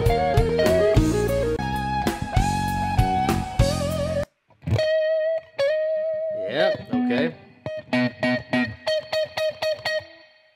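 Live-recorded electric guitar lead over bass and drums that cuts off suddenly about four seconds in. After a short gap, a lone electric guitar plays a clean phrase of held notes with vibrato and bends, then a run of quick picked notes that fades near the end.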